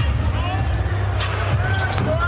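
Basketball game sound from the court: a ball dribbled on the hardwood floor and short high sneaker squeaks, over arena background music with a steady deep bass.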